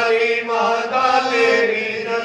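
A voice chanting a devotional Hindu hymn (bhajan) in a drawn-out melody that slides between notes.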